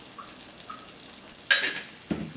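A single sharp clank of metal cookware on the stove about one and a half seconds in, loud and ringing briefly before it dies away.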